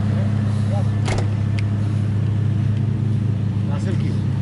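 A steady, unbroken low mechanical hum, like a vehicle engine or motor running near the microphone, with a couple of brief clicks about a second in.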